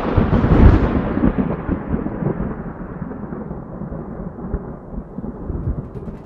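Thunder sound effect: a loud rumbling crash that is heaviest in its first second, then slowly dies away, its hissing upper part fading first and leaving a low rumble.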